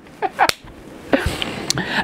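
A sharp crack about half a second in, followed by a man's breathy, noisy exclamation and a second short crack near the end.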